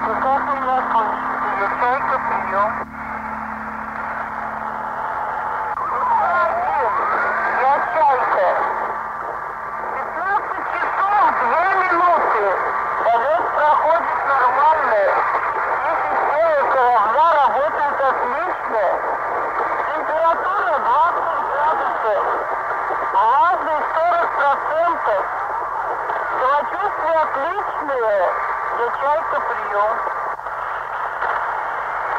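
Narrow, radio-like sound with muffled voices and warbling tones that slide up and down, as if heard through a small radio speaker, in place of the band's music.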